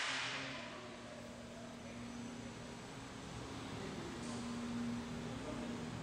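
Faint steady background hum of a large shop, with a low held tone, opening with a brief rush of noise that fades within about half a second.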